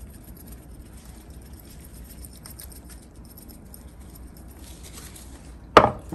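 Onion powder being shaken from a spice jar onto raw chicken breasts: faint, light pattering and ticks. A sharp knock comes near the end.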